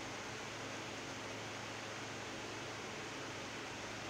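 Steady faint hiss with a low hum underneath: room tone and recording noise, with no other sound.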